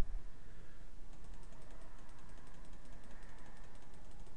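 Faint, rapid, even ticking of a computer mouse, about five clicks a second, as a list of sound files is scrolled through.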